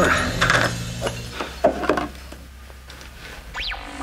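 A small cylindrical container comes apart and its pieces are set down on a wooden desk, making a few light clicks and knocks. Under it runs background music with a low sustained drone, and swooping tones come in near the end.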